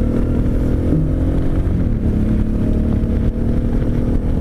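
Suzuki V-Strom 650's V-twin engine running steadily at road speed, heard from the rider's position with a heavy low rush of wind.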